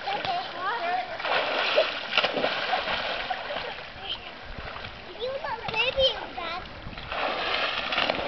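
Swimming-pool water splashing in two spells, about a second in and again near the end, as people move and play in the water, with voices calling in between.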